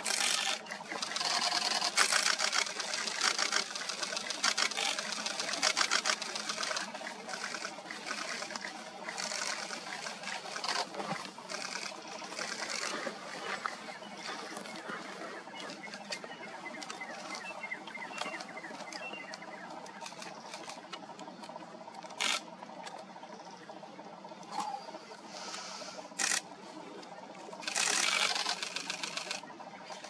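Camera shutters firing in rapid bursts of clicks, thick and continuous at first, then thinning out, with short louder bursts near the end.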